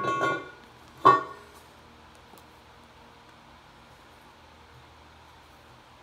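A thin intake manifold gasket being flexed as it is popped free and handled, giving one sharp springy twang about a second in. Only faint handling noise follows.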